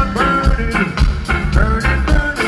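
Live reggae band playing: heavy bass and a steady drum beat, with a man's voice on the microphone over it.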